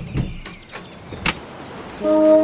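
Gap between two lofi beats tracks, filled by a noisy sound effect with no melody: a soft low thump near the start, scattered clicks, and one sharp click a little over a second in.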